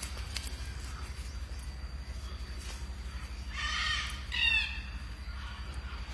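A blue-mutation blue-and-gold macaw gives a rough, raspy squawk about three and a half seconds in, then a short, louder pitched call just after, over a low steady hum.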